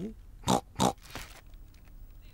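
Two quick cartoon pig snorts, about a third of a second apart: the strange noise that gives away a hiding pig.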